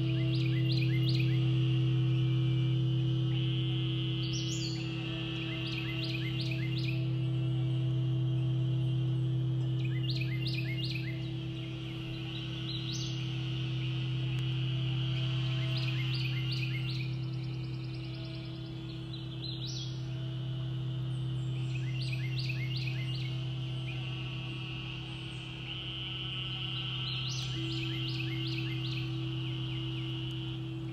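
Crystal singing bowls being played: a deep sustained hum with steady higher overtones, swelling and easing in slow waves. Over it come short bursts of high chirping bird calls every few seconds.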